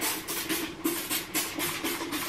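Trigger spray bottle of bathroom cleaner squeezed over and over, a short hiss with each squirt, about four squirts a second.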